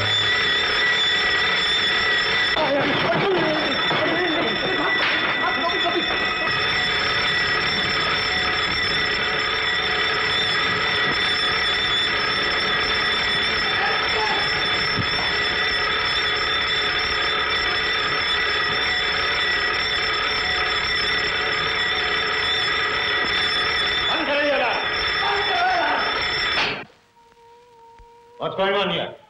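Burglar alarm ringing continuously with a steady, high, shrill tone. It cuts off abruptly about a second before the end. Men's voices are heard briefly over it early on and again near the end.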